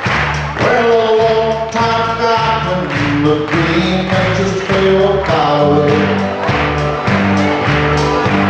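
Live country band playing: electric and acoustic guitars, bass and drums keeping a steady beat, with singing over it.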